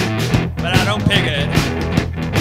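Garage rock-and-roll recording playing: electric guitar over a steady drum beat, with a wavering, bending line partway through.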